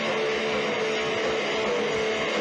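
Punk rock band playing live: loud distorted electric guitars over drums with a steady thumping beat, heard from within the crowd as a muddy, dense wall of sound.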